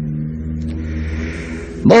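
A pause in a man's speech, filled by the steady low hum of an old recording. His voice comes back just before the end.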